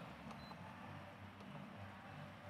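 Quiet lull: faint steady low hum and hiss of room tone, with a couple of faint ticks.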